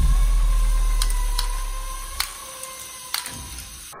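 Lego Technic bucket wheel excavator's electric motor and plastic gearing running with a steady whine, with a low rumble that fades over the first two seconds. Four or five sharp clicks as plastic balls drop from the conveyor into a plastic bin.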